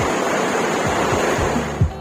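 A steady, even hiss of background noise with a few faint low thuds under it; it drops away near the end as background music with a beat comes in.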